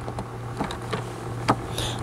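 A steady low electrical hum with a few faint clicks, and a breath drawn near the end.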